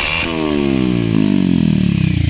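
Bajaj Pulsar 150's single-cylinder engine through an aftermarket SC Project exhaust: one sharp throttle blip at the start, then the revs fall steadily back toward idle over about two seconds.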